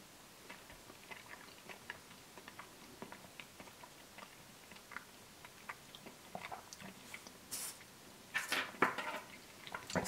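Close, faint mouth sounds of someone eating a spoonful of Oreo cookies-and-cream ice cream: small wet clicks and smacks of chewing, with a few louder, hissy sounds near the end.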